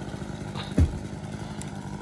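An engine running steadily at idle, with one heavy thump a little under a second in.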